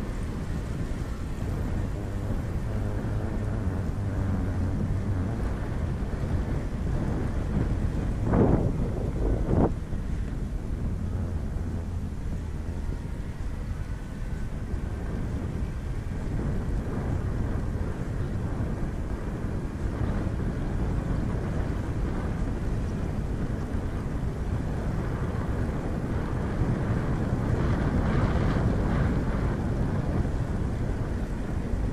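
Wind rushing over the microphone of a camera on a moving vehicle, over a steady low road and engine rumble, with two brief louder surges a little after eight seconds in and a second later.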